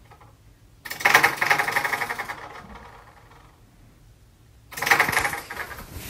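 A bedroom door rattling fast in its frame in two bursts, about a second in and again near the end, as something at the foot of the door paws and pushes at it.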